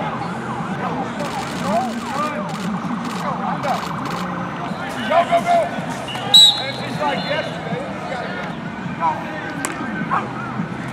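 Outdoor football practice ambience: overlapping shouts and calls from many players and coaches, with a louder high-pitched call a little past the middle.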